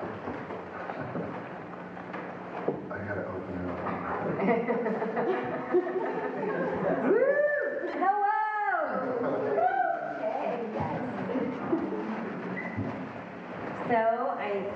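Casual talk among several people, partly indistinct, with laughter and a few loud drawn-out exclaimed syllables about seven to nine seconds in.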